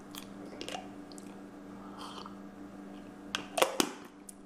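A steady low hum with a few faint clicks, then a quick cluster of sharp knocks near the end as a mug is handled and lifted off the desk.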